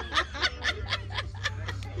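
A person laughing in short, evenly spaced bursts, about four a second, over a steady low hum.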